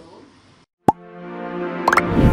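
Channel outro music sting. A single plop comes about a second in, then a held electronic chord swells up, with quick rising tones near the end.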